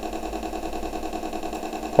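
A computer speaker playing a simulated sounder fed a 10 Hz, 5 V sine wave, giving a low, steady buzz with a rapid, even pulse.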